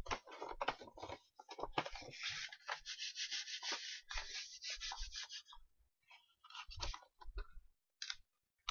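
Sheets of construction paper rustling and rubbing as they are handled, in a run of noisy strokes with a short pause about two-thirds through.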